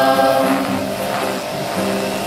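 Mixed youth choir singing an Ayangan Ifugao gospel song to acoustic guitar. A held sung note softens about half a second in, with sustained tones carrying on quietly underneath.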